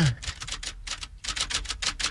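A rapid, uneven run of light clicks or taps, about eight to ten a second.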